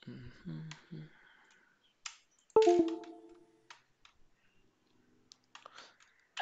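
Scattered sharp clicks, and about two and a half seconds in a single bright chime-like tone that strikes suddenly and fades within about a second. A brief low run of stepped tones comes in the first second.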